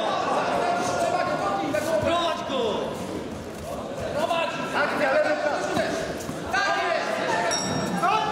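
Indistinct shouting from several men, overlapping voices echoing in a large hall.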